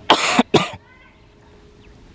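Two short, harsh cough-like bursts in quick succession, the second shorter, then quiet outdoor background.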